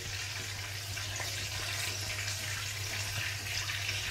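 Hot oil sizzling steadily with faint pops as food deep-fries, over a low steady hum.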